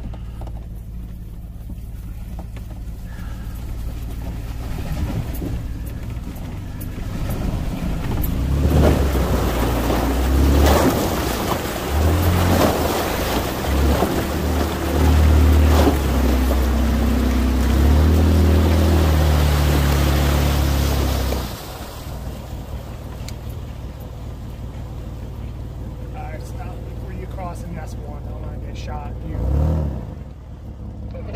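Jeep engine running low, then from about 8 s in pulling hard, its note rising and falling, with a rush of splashing water as it ploughs through a deep, icy water crossing. After about 13 s it drops back to a low idle.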